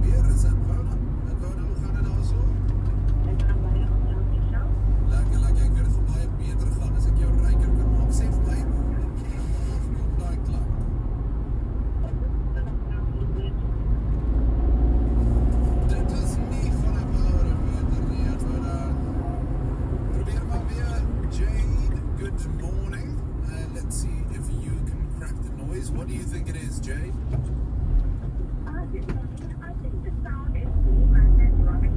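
A car being driven, heard from inside the cabin: a steady low engine and tyre rumble, with a voice from the car radio talking underneath.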